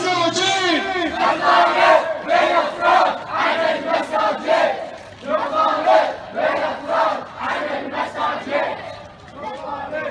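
A crowd of protest marchers chanting slogans in unison, loud shouted phrases repeated in rhythm.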